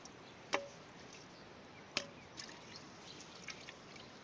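Two sharp knocks on an earthenware pot about a second and a half apart, each with a short ringing tone, followed by a few lighter clicks as the pot is handled.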